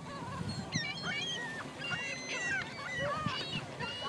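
Several gulls calling over one another in short, overlapping cries, over a low steady wash of lake water on the shore.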